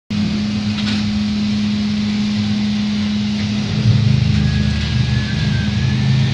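Ride-on floor scrubber-driers running, a steady motor and vacuum hum that gets louder about four seconds in, with a faint thin whine near the end.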